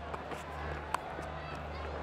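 Low stadium crowd murmur with a steady hum, and one sharp crack about a second in: a cricket bat striking the ball.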